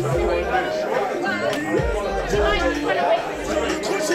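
Several men chattering at once over music with a recurring deep bass line.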